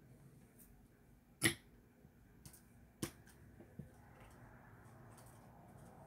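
A few sharp taps and clicks from handling a liquid glue bottle and a paper tag on a craft table: a loud one about one and a half seconds in, another about three seconds in, and some fainter ticks, over quiet room tone.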